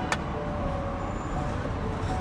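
Steady street traffic noise, with one sharp click just after the start.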